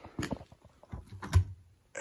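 Handling of a desk globe as it is picked up from a tiled floor: a few light knocks and one louder low thump about one and a half seconds in.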